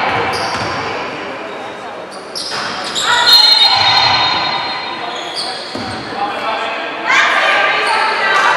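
Basketball bouncing on a wooden gym floor while players and spectators shout, in a large sports hall.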